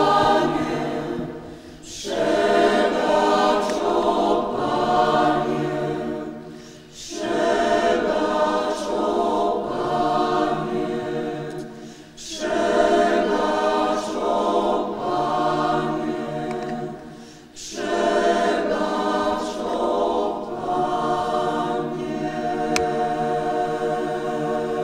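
Mixed choir of women's and men's voices singing in long phrases, with a short break between phrases about every five seconds.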